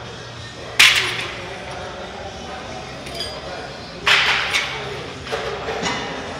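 Cable-machine weight stack clanking, metal plates striking and ringing: two loud clanks, about a second in and about four seconds in, then a few lighter knocks near the end. Low steady gym background underneath.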